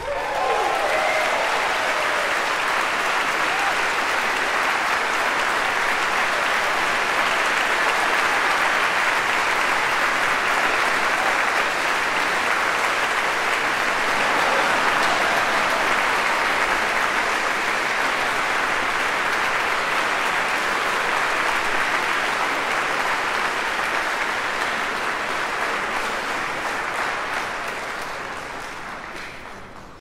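Concert audience applauding steadily, tapering off near the end.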